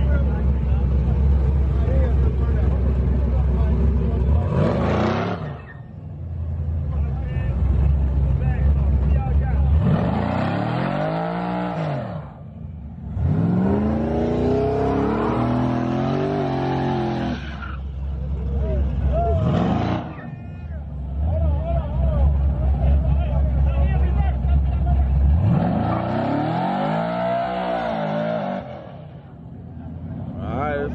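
Box Chevy's engine revving hard about five times, each rev climbing and falling back, with a deep steady rumble from the idling engine between the revs. The rear tyres are spinning in a smoky burnout.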